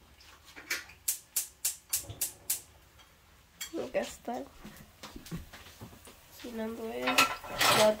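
Gas range spark igniter clicking: a quick run of about six sharp, evenly spaced clicks, roughly three a second, as a burner or the oven is lit.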